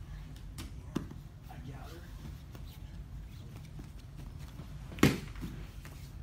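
A single sharp slap, a hand striking the grappling mat, about five seconds in and much louder than anything else, with a small click about a second in, over a low steady hum.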